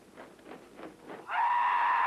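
A kendo fencer's kiai: a loud, high, drawn-out shout that starts over a second in and is held.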